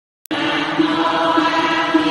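Buddhist chanting, voices reciting in a steady, rhythmic drone. It is cut by a brief silence and a click at the very start, then resumes about a third of a second in.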